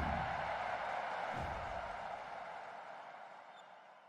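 Logo sting sound effect: an airy whoosh that swells and then slowly fades out, with a soft low thud about one and a half seconds in.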